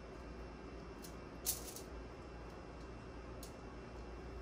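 Quiet room with a short, sharp click about a second and a half in and a fainter one near the end: mini chocolate chips being dropped into a sugar cone.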